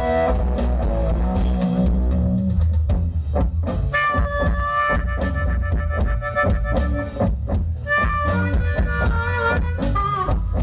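Live blues band playing: electric guitars and a drum kit keeping a steady beat over heavy bass. From about four seconds in, a harmonica holds and bends long notes over the band.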